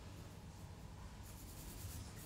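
Faint, soft scratching strokes of a gel-polish bottle brush being worked against a fingernail and the bottle neck, a few of them in the second half, over a low steady hum.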